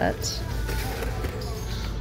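Steady low rumbling background noise with faint background music.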